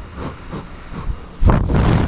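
A walrus breathing and sniffing right against the microphone, with a loud, rushing exhale through its nostrils about one and a half seconds in. Its whiskers rub on the camera.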